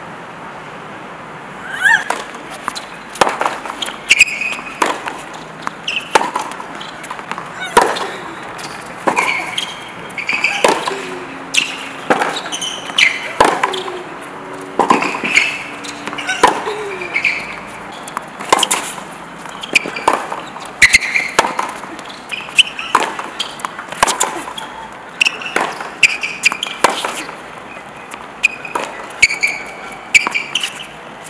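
Tennis being played on a hard court: sharp racket-on-ball hits and ball bounces that start about two seconds in and come roughly once a second, with short high squeaks between them.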